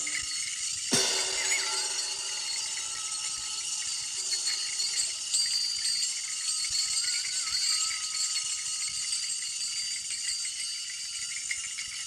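Music: the quiet opening of a live jazz big-band piece. It is mostly a high, shimmering percussion texture over a faint, wavering held tone, with one sharp struck accent about a second in.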